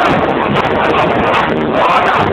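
A man singing into a microphone over electronic keyboard accompaniment, played through a PA system.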